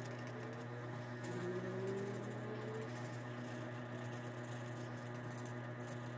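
Felt-tip art marker rubbing on paper in quick strokes, with a few short rising squeaks in the first half, over a steady low hum.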